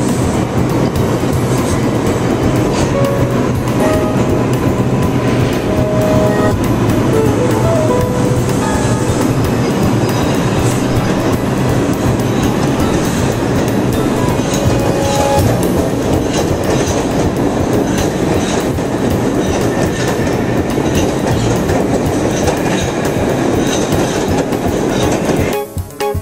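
New York City subway train running through an underground station: a loud, steady rumble and clatter of wheels on the rails.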